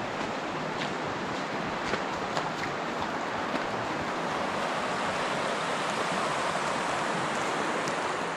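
Steady rush of flowing water from a mountain stream, swelling slightly toward the end.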